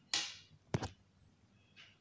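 Quiet handling noises: a short soft swish just after the start, then two light knocks in quick succession a little under a second in.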